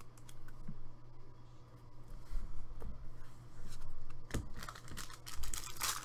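Trading cards being flipped through by hand, the cards clicking and sliding against each other, with a foil card-pack wrapper crinkling near the end.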